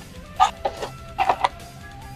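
Foil booster packs rustling and crinkling in gloved hands as they are taken out of a cardboard display box: a few short rustles over quiet background music.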